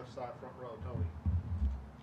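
A faint voice away from the microphone in the first second, then a few low dull thumps, as of knocks against the podium.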